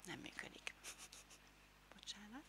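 Near silence with a few faint soft clicks and rustles, and a brief faint voice sound at the very start.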